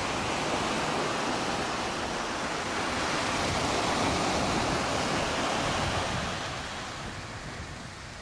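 Sea surf washing onto a beach: a steady rushing noise of waves that fades over the last couple of seconds, heard through a video shared over a Zoom call.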